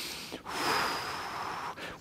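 A man breathing forcefully while straining in a held maximal muscle contraction: a short breath, then a long hissing breath of about a second with a faint high whistle in it.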